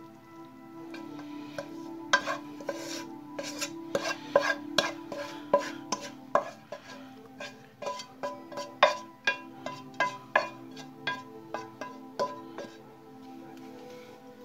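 Wooden spatula scraping sautéed vegetable filling out of a frying pan, with many sharp taps and knocks of wood on the pan from about a second in until near the end. Steady background music plays underneath.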